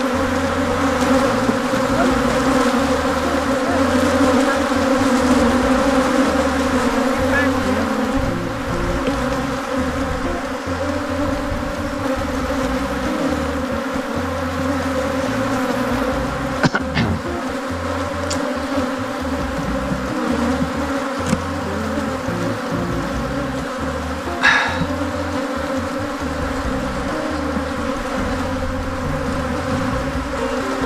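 Many honeybees buzzing around an open hive, a steady, dense hum, with a brief knock or rasp twice, about midway and about two-thirds through.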